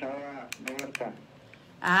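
Mostly speech: a man's voice over a telephone line, thin and cut off at the top, with a few sharp light clicks in the first second. A louder woman's voice comes in near the end.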